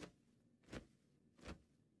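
Near silence, with three faint short ticks evenly spaced about three-quarters of a second apart.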